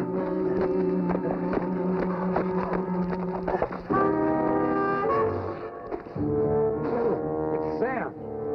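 Orchestral television score led by brass, holding sustained chords that shift to new chords about four seconds in and again about six seconds in.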